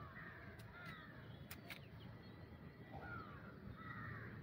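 Faint bird calls: a handful of short calls, each sliding downward in pitch.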